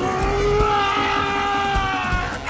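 Action film score: one long held note that sags slightly in pitch over about two seconds, over a low pulsing beat.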